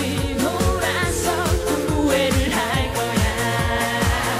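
A woman singing a Korean trot song live with a band, her voice over a steady dance beat and sustained accompaniment.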